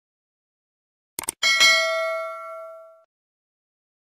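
Sound effect of a quick double click followed by a bright bell ding that rings and fades out over about a second and a half, the cue for a notification bell button popping up.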